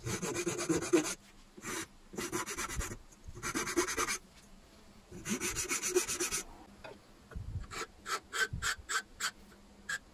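Flat steel hand file rasping across the edge of a hardwood piece, in separate strokes of about a second each. From about eight seconds in the strokes turn short and quick, about two or three a second.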